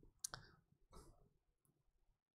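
Near silence with a few faint, short clicks, the sharpest about a quarter second in and another about a second in.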